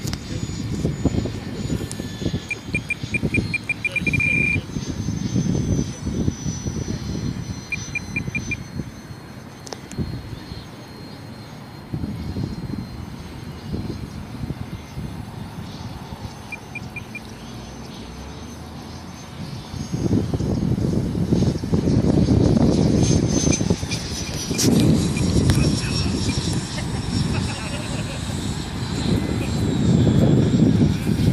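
Electric ducted-fan RC jet (Freewing 90 mm F-104 Starfighter on 8S) in flight: a thin, high fan whine that drifts slightly in pitch over a gusty low rumble, which grows louder for the last ten seconds. Short runs of rapid electronic beeps come three times.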